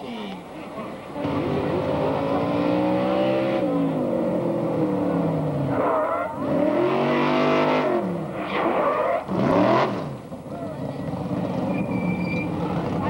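Engine of a motorized fire-department drill team racing rig revving as it runs down the track, its pitch climbing and dropping several times, loudest near the end.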